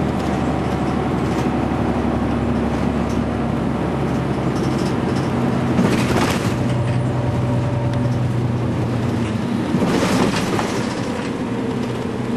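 Bus engine and road noise heard from inside the passenger cabin of a moving bus: a steady low engine hum under a rushing tyre-and-road noise, with two brief louder rushes of noise about six and ten seconds in.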